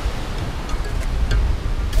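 Wind buffeting the microphone in a steady low rumble, over the wash of sea surf.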